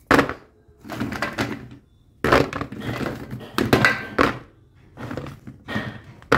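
Raw singaras, stiffened in the freezer, dropped by hand one after another into a plastic container: a run of irregular hollow thunks and knocks, about every second.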